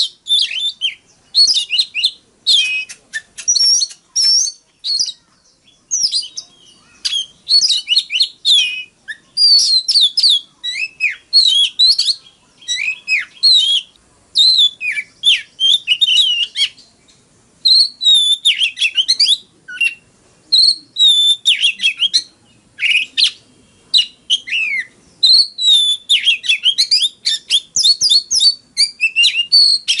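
Oriental magpie-robin singing: a rapid stream of varied, sweet whistled phrases, broken by short pauses.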